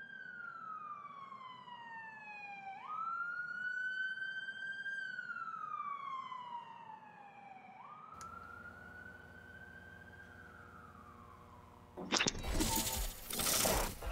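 A siren-like wailing tone, slowly falling, jumping back up and rising and falling again, three wails in all, fading out. A loud burst of sound comes in near the end.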